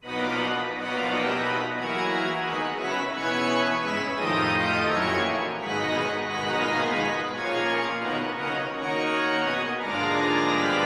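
Large pipe organ, the Methuen Great Organ, entering loud after a moment of near silence and playing many sustained pitches at once, with deep pedal bass under the chords.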